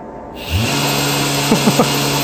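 2000 W 48 V brushless ebike motor spinning up, its pitch rising about half a second in and then holding a steady whine, over the rush of air its internal fan pushes through freshly drilled cooling holes.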